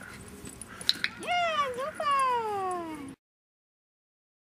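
A sharp click about a second in, then two long, loud, high-pitched vocal calls, the second sliding steadily down in pitch. The sound cuts off shortly before the end.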